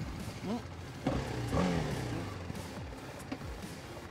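A motor vehicle engine running with a low steady hum. It swells about a second in, then falls in pitch and fades over the next second.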